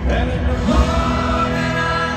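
Live country band playing loudly with singing, a heavy low beat of drums and bass coming in at the very start.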